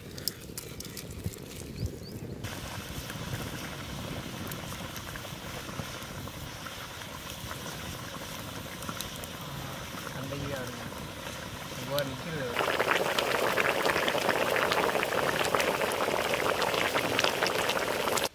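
Quail gravy simmering in a pot over a wood fire, bubbling and popping with many small ticks. It gets noticeably louder and busier about twelve seconds in.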